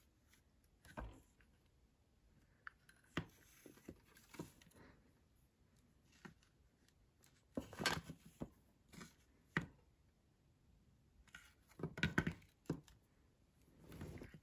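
Faint, scattered clicks and light knocks of a small painted wooden birdhouse being handled, its roof lifted by the cord and the base shifting on a glass tabletop. The knocks come in short clusters, busiest about halfway through and again near the end.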